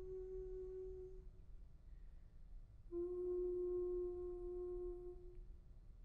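Soprano voice holding long, steady notes with little vibrato: one note dies away about a second in, and after a pause a second, slightly lower and louder note starts suddenly and is held for about two and a half seconds.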